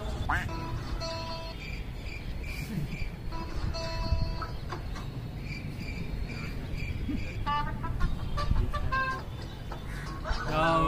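Background music with short steady tones and high pips, about two a second through the middle, and brief snatches of speech near the end, over a steady low rumble.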